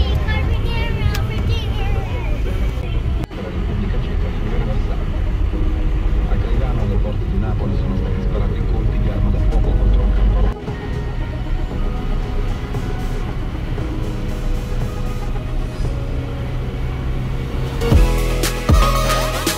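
Steady low road rumble of a car driving, broken by two sudden cuts, about three seconds in and about ten and a half seconds in, with music and a voice mixed in over it.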